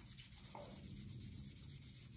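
A microfiber cloth with a dab of cleaning paste rubbing faintly over a ceramic tile, wiping off Sharpie marker.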